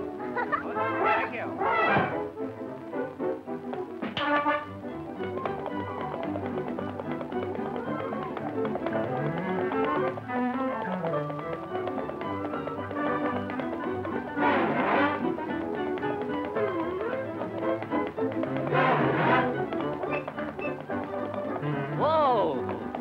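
Orchestral cartoon score with a Latin, Spanish-style rhythm and tapping percussion, playing steadily, with a few short wavering accents over it.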